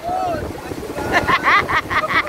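Surf washing in the shallows, with wind on the microphone. From about halfway, a woman laughs in rapid, rhythmic bursts.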